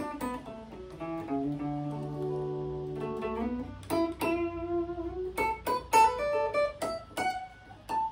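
Guitar playing notes of the D major pentatonic scale one at a time in the D position. In the first three seconds several notes are left ringing together, then from about four seconds in comes a run of separate plucked notes.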